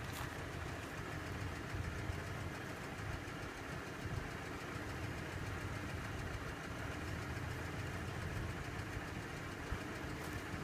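Four-wheel drive's engine idling steadily, a low, even running sound.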